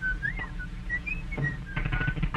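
A whistled tune of short notes that slide up and down from one to the next, with a few light knocks in the second half.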